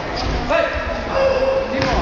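Voices shouting, over repeated low thuds from a kickboxing bout.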